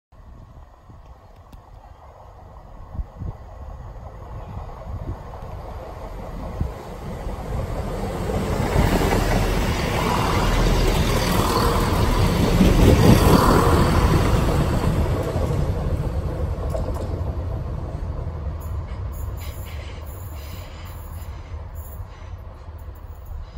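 Class 170 Turbostar diesel multiple unit approaching, growing steadily louder to a peak a little past halfway as it passes close by, then fading as it runs on into the station.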